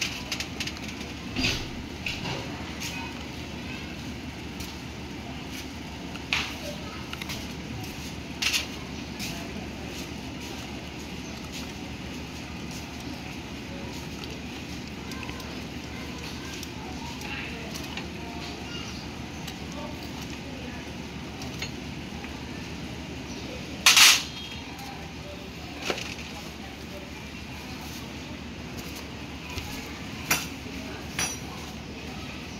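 Screwdriver and tools working on a Honda Wave S110 clutch as the screws of the clutch cover plate are driven in: scattered short metal clicks and taps, the loudest about 24 seconds in. Beneath them runs a steady low background hum.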